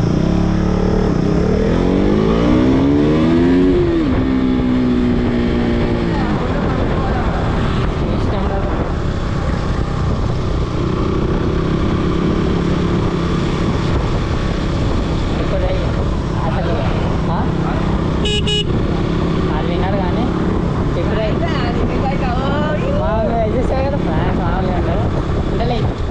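KTM RC sport bike's single-cylinder engine under way: the revs climb over the first few seconds, drop at a gear change, then hold steady at cruising speed with wind rush. A short beep comes about two-thirds of the way through.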